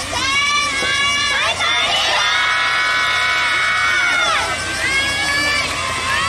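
A group of girls' voices shouting a cheer together, high-pitched: short rising shouts at first, then one long held call from about two seconds in, and another shout near the end.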